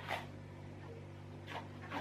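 Soft swishing of a paintbrush being stroked through thick blue paint on a canvas: one short stroke just at the start and a longer one that grows louder near the end, over a steady low hum.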